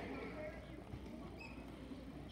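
Faint, high children's voices murmuring and chattering in short snatches, with no clear words, over a low steady hum.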